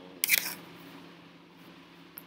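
A quick clatter of mechanical clicks, a fraction of a second long, about a quarter second in, from the computer's keys or buttons being pressed.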